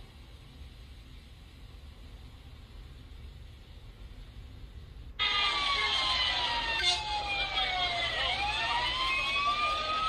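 Faint low rumble, then about five seconds in a loud emergency-vehicle siren cuts in abruptly, wailing in slow falls and rises.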